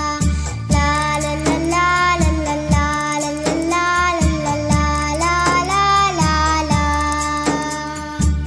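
Tamil Christian devotional song: a high singing voice carries a gliding melody over a sustained accompaniment and a steady low beat.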